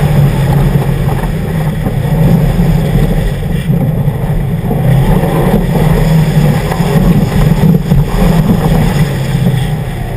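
2011 Subaru WRX's turbocharged flat-four engine running hard on a gravel rally course, loud throughout, its level surging and dipping with the throttle through the turns.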